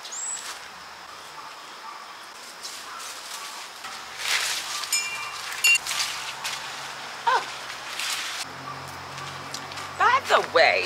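Cantaloupe vine and its leaves rustling as it is pulled down off a metal arch trellis by hand, in several short bursts in the second half, with a few bird chirps.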